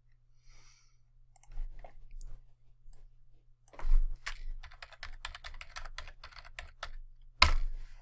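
Typing on a computer keyboard: a few scattered key clicks, then a quick run of keystrokes for about three seconds in the second half, ending with one sharper click.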